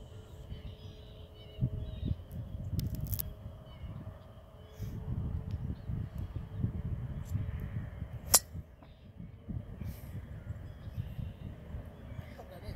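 A golf driver strikes a teed ball once with a sharp crack about eight seconds in, over a low steady rumble. The club grounded a little on the swing.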